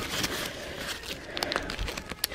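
Rustling and crinkling of items being rummaged through by hand inside a fabric diaper bag, with a few small clicks and knocks.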